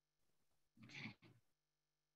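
Near silence, with one brief faint sound about a second in.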